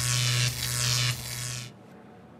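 An electronic buzzing sound effect on one steady low pitch. It grows quieter after about a second and cuts off after about a second and a half.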